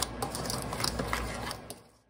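A metal spoon stirring a dry mix of sugar, cinnamon and nutmeg in a bowl: rapid scraping and clicking against the bowl, fading out near the end.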